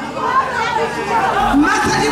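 Speech: voices talking over one another, a woman's voice over a microphone among crowd chatter.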